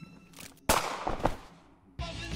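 A sudden loud bang from a film soundtrack, with a second, weaker hit about half a second later, both fading out quickly.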